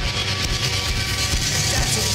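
Punk rock band music: electric guitar over a steady drum beat.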